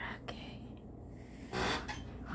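A short breathy exhale or huff about a second and a half in, after a couple of faint ticks near the start, over quiet room sound.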